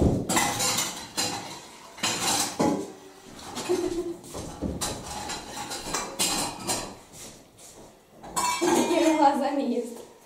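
Cutlery clinking and knocking against dishes in a string of light, irregular clinks, with a short stretch of voice near the end.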